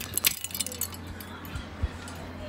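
Small hard objects jangling and clinking close to the microphone in the first half second, then quieter handling noise over a steady low hum.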